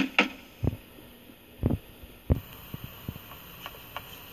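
Knocking at a door: three dull knocks spaced roughly a second apart, followed by a few lighter taps.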